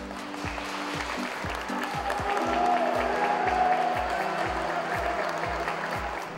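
Background music with a steady beat, and applause from a group of people that swells up about half a second in and carries on under the music.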